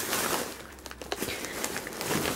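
Plastic carrier bag rustling and crinkling as it is handled, with scattered small crackles.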